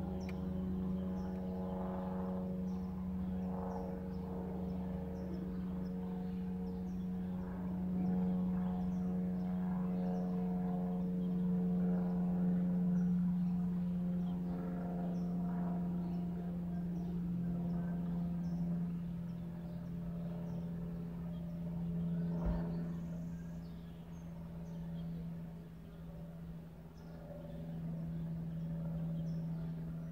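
A steady mechanical hum made of several tones, dropping a little in pitch a bit past halfway. Faint short high chirps repeat about once a second.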